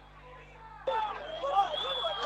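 Near silence for about a second, then men's voices talking quietly, with a faint steady high tone under them.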